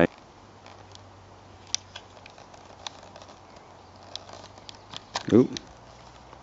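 Faint, scattered small clicks and light rustling over a low steady hum, with the strongest click about a second and a half in and a short "ooh" near the end.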